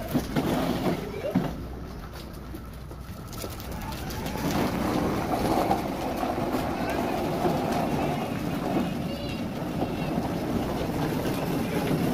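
Children's voices calling and chattering over the rumble of plastic ride-on toy car wheels rolling across concrete.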